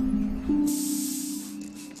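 Hiss of a backpack pressure sprayer spraying disinfectant. It starts suddenly under a second in and tails off into short puffs, over background music of slow plucked notes.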